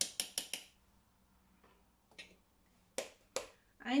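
A metal teaspoon tapped four times in quick succession against the stainless steel mixing bowl of a Thermomix TM6, knocking off the last of the thyme, then two more sharp clicks near the end as the next seasoning is handled.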